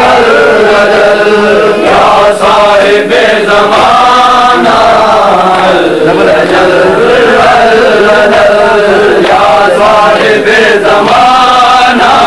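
A crowd of men chanting a noha (Shia mourning lament) in unison, a loud continuous melodic chant led by a reciter, with a few scattered sharp strokes from the chest-beating of matam.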